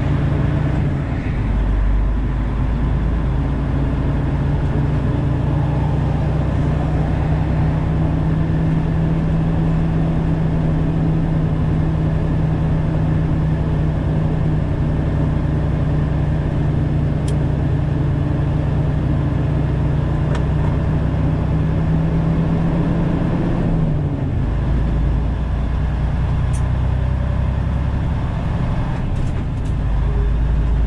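Semi-truck's diesel engine droning steadily inside the cab, with road and tyre noise. A little over three-quarters of the way through, the engine note drops lower.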